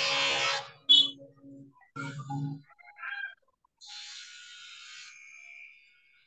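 Furniture creaking and scraping picked up by a participant's unmuted microphone on a video call: several short pitched creaks and a click in the first few seconds, then a hiss with a thin steady tone from about four seconds in. This is unwanted background noise from an open mic.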